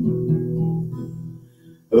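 An acoustic guitar chord strummed once and left ringing, fading away over about a second and a half.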